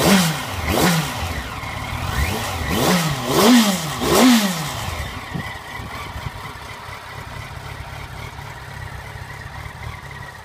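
Yamaha FZ1 Fazer's inline-four engine being blipped at standstill, revs rising and falling sharply about five times in the first few seconds. After that it settles to a steady idle.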